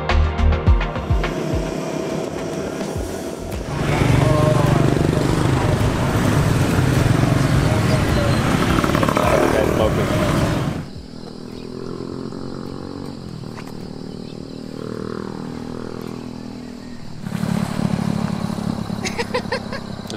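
Background music ending in the first couple of seconds, then busy street traffic dominated by motorbike and scooter engines, with voices in the mix. After that comes a quieter stretch in which an engine changes pitch as it passes.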